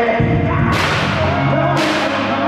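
Southern soul music playing, with two sharp whip-crack-like hits about a second apart, each trailing off quickly.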